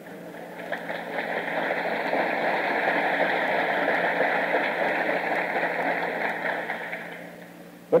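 Audience applauding and laughing in response to a joke, a dense crackling crowd noise that swells over the first second, holds, then fades away near the end.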